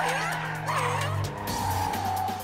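Cartoon sound effect of a car's tyres squealing as it skids through a bend: a long held screech starting a little under a second in, over background music.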